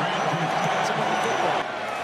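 Steady stadium crowd noise at a football game, a dense murmur of many voices, dipping slightly about one and a half seconds in.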